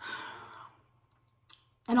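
A woman's heavy sigh, a breathy exhale lasting a little over half a second, followed by a small click before she starts speaking again near the end.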